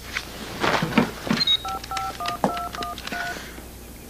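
Some rustling, then a telephone keypad dialing: about seven touch-tone beeps in quick succession, each a two-note tone.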